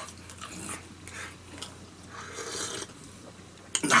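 Faint mouth sounds of a man chewing a steamed bun, with a few soft clicks as he picks up a glass of iced tea.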